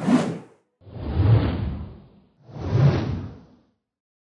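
Three whoosh sound effects, each a swell of rushing noise that rises and fades away; the first is short and the next two are longer.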